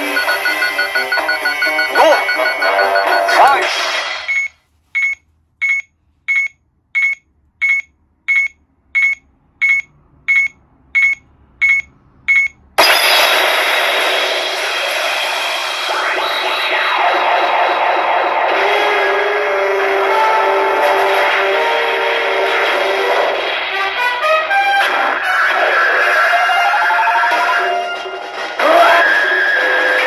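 Sound effects and music from a Kyoraku CR Pachinko Ultraman M78TF7 pachinko machine during play: busy electronic jingles, then about a dozen short high beeps a little over one a second with silence between them, then loud music and effects start again suddenly.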